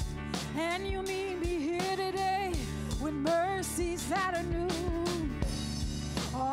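Live worship band playing a contemporary worship song: a female lead vocal sings long held lines over guitars, keyboard and a drum kit keeping a steady beat.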